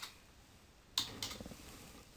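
Keystrokes on a computer keyboard: a light key tap at the start and a sharper, louder one about a second in.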